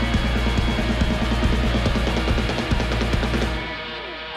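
Live rock band playing, with electric guitar over a drum kit; the full band sound thins out and drops in level near the end.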